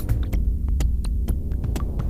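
IDM electronic music from a live laptop set: a deep, steady bass throb under scattered sharp clicks and ticks, with the sustained tonal layer thinned out.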